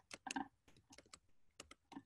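Faint, quick, irregular clicking of computer keys: about ten taps in two seconds.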